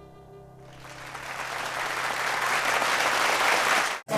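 The last held notes of a song fade out, and about half a second in applause starts and grows steadily louder until it is cut off abruptly.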